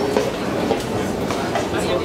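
Escalator running as it carries a rider downward: a steady mechanical rattle of the moving steps with scattered short clicks, under indistinct chatter of people around.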